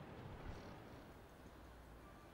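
Near silence: a faint, low outdoor background rumble, with a slight swell about half a second in.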